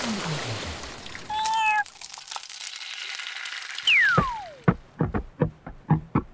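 Cartoon sound effects for an animated logo sting: a long falling whistle glide, a wash of noise and a short wavering tone, then a second falling whistle about four seconds in. Sharp, evenly spaced hits, about three a second, start near the end as the end-screen music begins.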